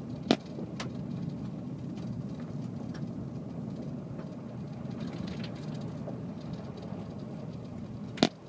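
Car driving along, a steady low rumble of engine and tyre noise heard from inside the vehicle. A sharp click comes about a third of a second in, and a fainter one shortly after.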